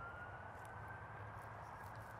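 Faint background ambience with a thin high tone rising slowly in pitch, fading out near the end.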